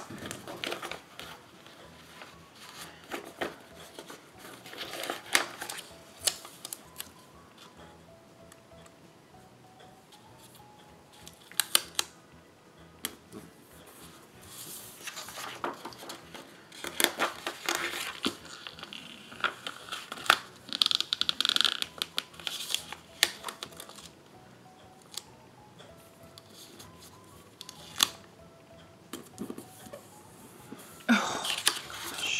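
Paper sheets of printed planner stickers being shuffled and handled on a table: irregular rustles, crinkles and sharper taps, with faint background music.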